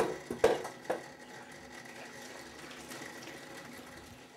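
Washing up at a stainless steel kitchen sink: three sharp metal knocks in the first second as a saucepan is handled, then a steady scrubbing and sloshing sound.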